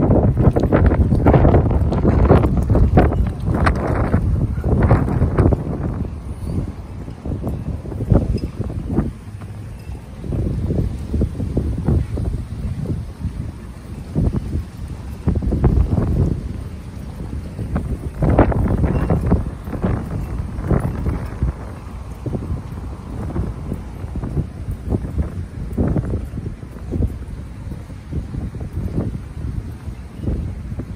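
Wind buffeting a phone microphone: a gusty low rumble that comes in surges, heaviest over the first several seconds and swelling again about two-thirds of the way through.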